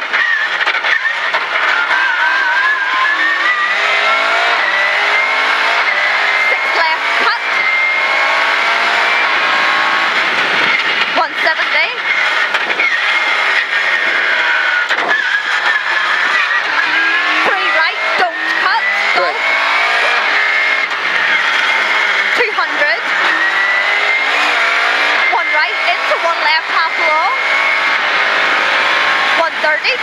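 Rally car engine heard from inside the cabin, revving hard and climbing in pitch through the gears, then falling away as it brakes and downshifts, three times over. Short sharp cracks come in between the climbs.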